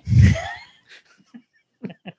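Laughter: a loud, gasping burst in the first half second, trailing off into faint breaths and small sounds.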